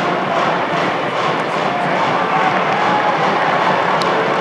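Stadium cheering music with a steady beat, about two to three beats a second, over continuous crowd noise in the stands.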